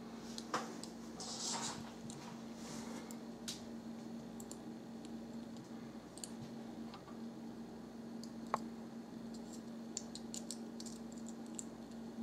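Faint, scattered small clicks over a steady low hum, with a brief patch of hiss about a second in.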